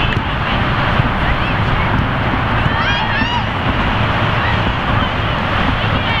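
Wind on the microphone with distant voices from players and spectators, and a short high-pitched shout about three seconds in.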